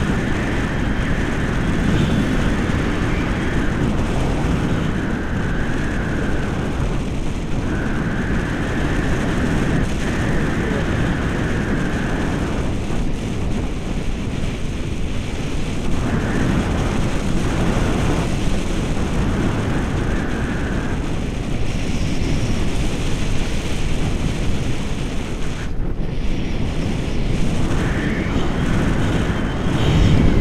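Wind rushing over the camera microphone of a paraglider in flight, a loud steady rumble. A thin high tone sounds for several seconds at a time and drops out, several times over.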